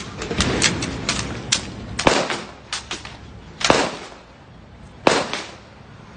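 Gunfire: about ten sharp shots fired irregularly, some in quick clusters, with three louder reports, each ringing on briefly, about two seconds in, near four seconds and about five seconds in.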